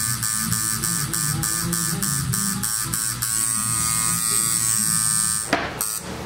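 Tattoo machine buzzing steadily as needles work into the skin of a leg. A rapid, regular ticking runs over it for the first three seconds, and the sound breaks off near the end.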